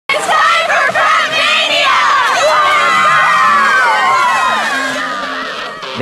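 A high school pom squad shouting and cheering together: many overlapping high-pitched young voices screaming and whooping, fading off near the end.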